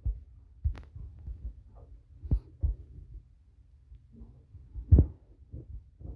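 A handful of soft low thumps and clicks over a faint hum, the strongest about five seconds in: handling noise of the phone as it is tapped and scrolled.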